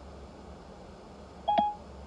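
Faint low hum, then about a second and a half in a short electronic beep from Siri through the CarPlay head unit's speakers, marking the end of the dictated message.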